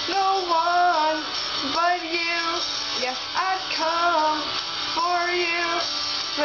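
A woman singing a slow melody: held notes that bend up and down, in phrases of about a second each with short breaths between them.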